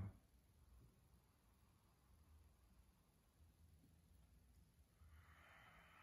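Near silence, then a faint slow breath through the nose about five seconds in, lasting about a second and a half: a deep breath taken in a breathing exercise.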